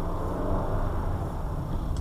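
A car's engine and tyre noise heard from inside the cabin as it pulls away and gathers speed at low speed: a steady low rumble.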